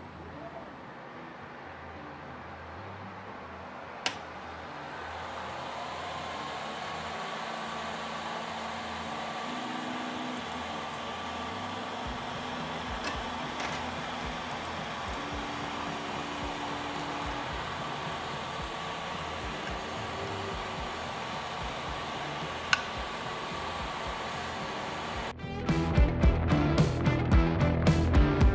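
Cooling fans of a Longer LK4 Pro 3D printer whirring steadily as it powers back up to resume a print after a power cut. There is a sharp click about four seconds in, just before the fan noise rises, and another click later. Music with guitar cuts in about three seconds before the end.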